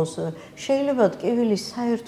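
Speech only: a woman talking in Georgian, in short phrases with brief pauses.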